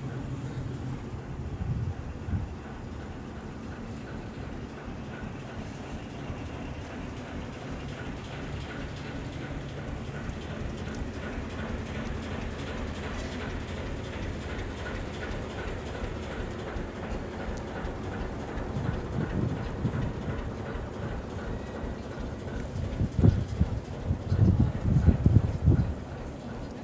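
Passenger train coaches rolling slowly past with a steady low rumble of wheels on rails. Knocks come as the wheels cross rail joints, with a run of louder knocks near the end.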